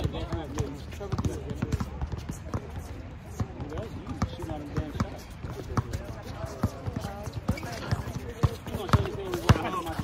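A basketball bouncing over and over on a hard outdoor court, in an irregular run of sharp knocks, as players dribble during a pickup game.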